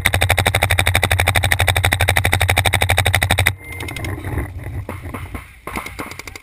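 Paintball marker firing a rapid, evenly spaced stream of shots, many a second, for about three and a half seconds, then stopping. Quieter, scattered pops follow.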